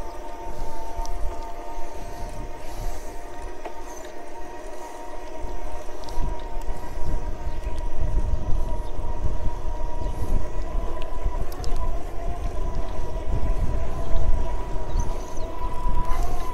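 Electric bike conversion-kit motor whining steadily under power, its pitch creeping slightly upward as the bike picks up speed. Wind rumble on the microphone grows louder from about six seconds in.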